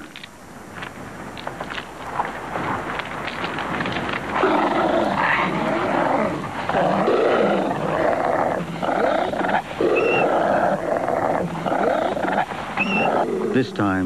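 Coyotes snarling and growling as they fight over a carcass. The sound is quieter at first and louder from about four seconds in, with short high yelps about ten and thirteen seconds in.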